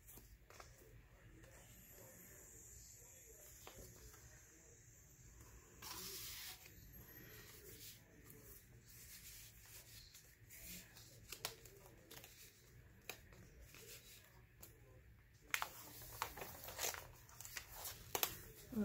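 Faint rustling of paper: cardstock ephemera cards handled, shuffled and slid into a paper envelope pocket, with a brief louder rustle about six seconds in and more handling near the end.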